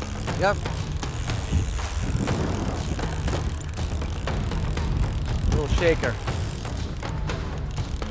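Strong wind buffeting the microphone over the steady hum of a boat's outboard motor running in gear, while a baitcasting reel is cranked to wind in a hooked musky.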